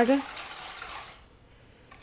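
Balloon whisk beating a runny egg, cream and lemon filling in a stainless steel bowl: a soft liquid swishing that fades out after about a second.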